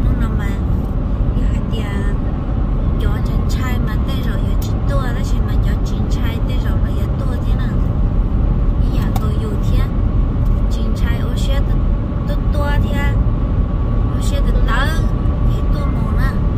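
Steady road and engine rumble inside a car cabin at freeway speed, with a person's voice talking intermittently over it.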